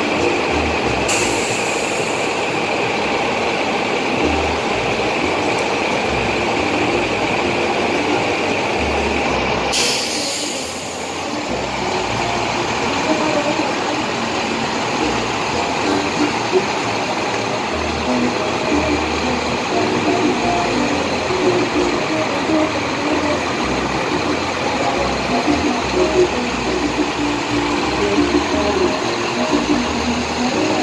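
Busy outdoor truck-show ambience: a steady mix of heavy-vehicle noise and a murmur of voices, broken by two short hisses, one about a second in and a longer one about ten seconds in.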